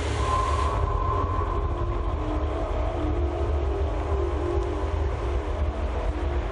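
A steady low rumble with faint held tones above it.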